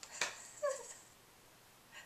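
A short, faint whimper-like vocal sound from a person, falling in pitch about half a second in, just after a sharp breath or click.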